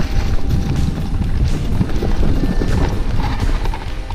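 Mountain bike riding over a dirt forest track, heard from a camera on the bike: a steady low rumble of tyres and wind with quick, irregular clicking and rattling as the bike goes over bumps.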